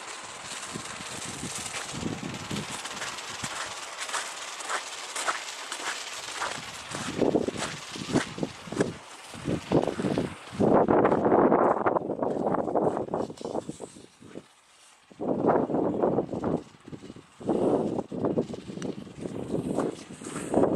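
Footsteps crunching on packed snow over a steady outdoor hiss. About halfway through, louder irregular rustling bursts take over, with a short lull before they return.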